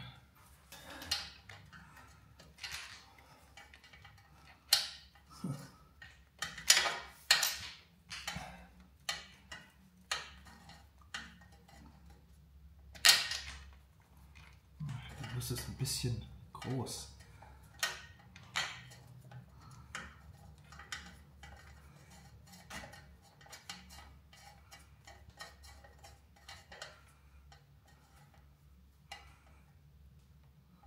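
Scattered metallic clinks and clicks from hands and tools at a motorcycle's oil drain plug as it is screwed back in with its new sealing washer, several sharper knocks about 5 to 8 seconds in and once about 13 seconds in.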